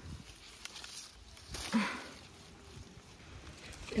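Faint rustling of apple-tree leaves and branch as an apple is picked by hand, with one short, louder rustle a little under two seconds in.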